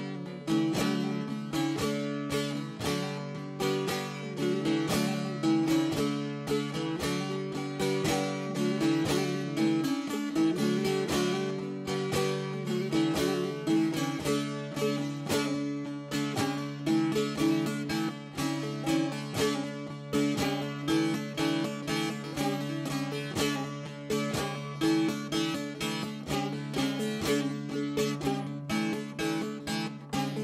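Bağlama (long-necked Turkish saz) playing a folk melody solo, strummed with the right-hand fingers rolled across the strings in quick repeated strokes over a steady low drone.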